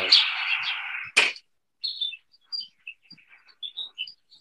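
Birds chirping in short, scattered calls, as ambience in a film soundtrack played over a video call. A hiss fades away over the first second, and a single sharp click comes just after a second in.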